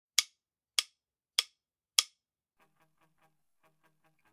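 Four-click count-in opening a rock backing track, the clicks sharp and evenly spaced about 0.6 s apart. About halfway through, faint quick plucked notes of the song's intro begin.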